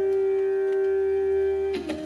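Bansuri (bamboo flute) holding one long steady note over a steady drone. Near the end a drum stroke lands and the flute steps down to a lower note.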